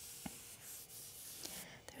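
Faint rubbing rustle of a Bible's paper pages being handled, with a couple of small clicks.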